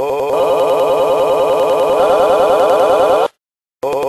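Telephone ringing: a fast trilling ring that steps up in pitch twice, then stops a little after three seconds in. Short, evenly spaced beeps follow, about one a second.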